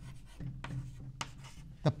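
Chalk writing on a chalkboard: a run of short scratchy strokes as a word is written.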